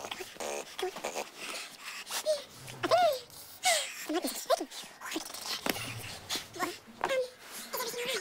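A woman's voice moaning and gasping in short, exaggerated sounds that sweep up and down in pitch, sped up so they sound higher and quicker than natural.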